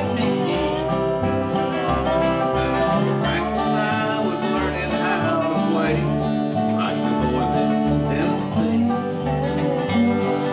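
Bluegrass band playing live: acoustic guitars strummed over a stepping upright bass, with banjo, and a man singing the lead vocal.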